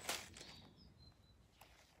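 A short rustle right at the start, then a few faint, brief high bird chirps over quiet outdoor background.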